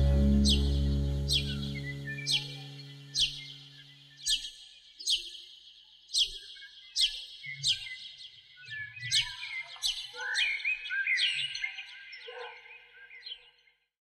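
The song's last sustained low chord fades out over the first few seconds, leaving a bird's short, high, down-slurred chirps repeating about twice a second. Other, lower bird calls join in near the end.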